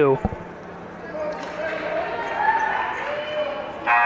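A basketball bounces on the gym's hardwood floor a few times near the start, then the murmur of voices in the gymnasium. A steady, buzzer-like tone begins right at the end.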